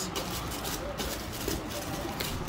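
Tissue paper rustling and crinkling in short irregular bursts as hands fold it back from shoes inside a cardboard shoebox.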